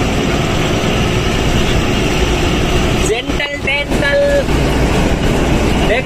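A truck's diesel engine running steadily under load as it climbs slowly uphill, with road and wind noise, heard from inside the cab. A man's voice comes in briefly about halfway through.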